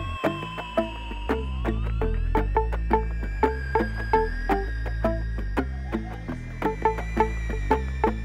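Live instrumental electro-folk music: a synthesizer and an electric guitar over a steady clicking, woody percussion beat and a pulsing bass. A sustained synth tone glides upward about two seconds in.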